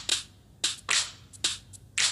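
Sharp hand claps keeping the beat of the song, about two a second.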